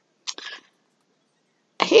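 A short, breathy burst like a stifled sneeze, about a quarter of a second in, otherwise quiet; a woman starts speaking near the end.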